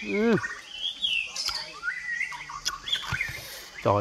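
Small birds chirping with quick rising and falling calls, over scattered wet clicks and smacks of a man chewing honeycomb; he hums 'mm' at the start and speaks briefly near the end.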